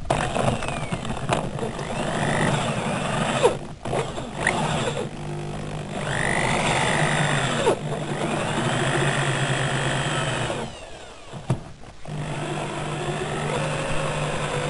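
Electric drill boring into a solid square iron bar held in a bench vise. The motor runs steadily under load, drops out for about a second near the end, then starts again.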